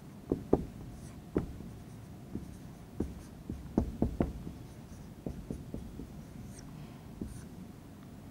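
Marker pen writing on a whiteboard: a string of short, irregular strokes and ticks as letters are drawn, with the pen tip tapping the board between them.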